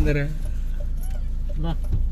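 Car driving, heard from inside the cabin: a steady low drone of engine and road noise, with brief bits of voice at the start and near the end.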